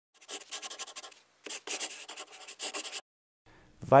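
Two bursts of rapid, scratchy rubbing strokes, the first about a second long and the second about a second and a half, followed by a brief silence.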